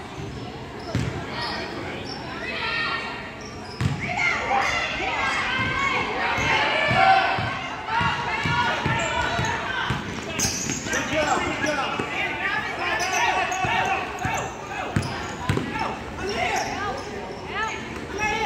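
A basketball being dribbled and bouncing on a gym floor, with short knocks scattered through, under the overlapping voices of players and spectators in the hall.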